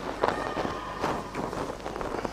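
Quick footsteps and light knocks in a reverberant church, with a few short ringing tones among them.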